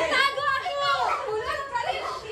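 Excited voices talking over one another, among them children's high-pitched voices.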